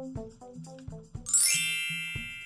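Light background music with a steady, evenly spaced beat, then about 1.3 s in a bright upward chime glissando that rings on and slowly fades, a page-turn sound effect.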